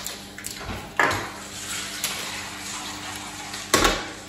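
Felt-tip markers being handled at a table: a few sharp plastic clicks and knocks, about a second in and loudest near the end, as markers are taken out of a pencil case and put down.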